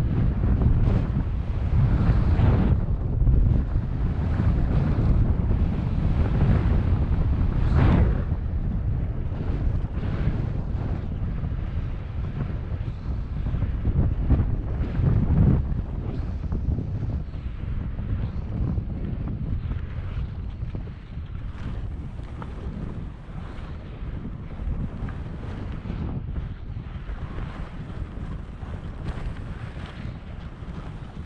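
Wind buffeting the microphone of a moving action camera while skiing, with the hiss and scrape of skis on chalky, tracked snow. It surges louder a few times in the first half, around 2, 8 and 15 seconds in, and is quieter over the second half.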